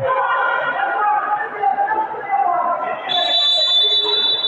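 Voices calling out across a large, echoing gym hall. About three seconds in, a single high, steady whistle blast sounds and is held for more than a second.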